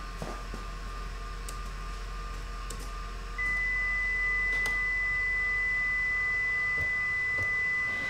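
A steady, unbroken high electronic beep, one pure tone that starts about three seconds in and holds, over a faint steady hum.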